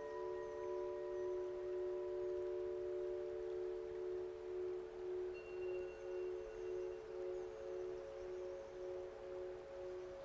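Soft ambient relaxation music of several long, held ringing tones in the manner of singing bowls, overlapping and slowly wavering in a gentle pulse from about halfway through.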